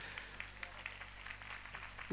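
Faint steady low hum of a public-address system, with soft background noise, in a pause between amplified lines of speech.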